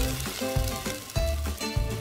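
Eggs sizzling in a cast iron skillet over a charcoal grill, a steady hiss under background music.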